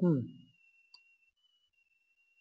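A man's short 'hmm' trailing off in the first half second, then near silence with one faint click about a second in.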